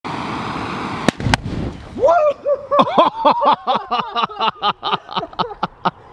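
A handheld butane torch hisses against a methane-filled balloon, which ignites about a second in with two sharp pops and a brief low whoosh of burning gas. A man then laughs loudly in quick bursts.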